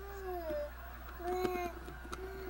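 A young baby cooing: a short call that falls in pitch, then about a second in a second, louder coo held on one pitch.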